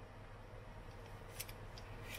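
Hands handling a foil pie tin and baking paper: two brief, faint crisp rustles about a second and a half in, over a low steady hum.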